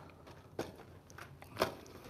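Plastic lure packets clicking and crinkling as they are handled: a few short clicks, the loudest one near the end.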